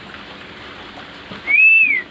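A short, high whistled note about one and a half seconds in that rises, holds and falls away over half a second, over a steady background hiss.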